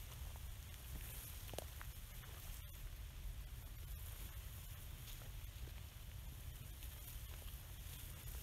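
Wind rumbling on the microphone over a faint, steady hiss of light rain just starting to fall, with a few faint ticks.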